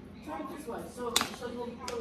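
Two sharp clicks or taps about three quarters of a second apart, the loudest sounds here, under quiet murmured talk.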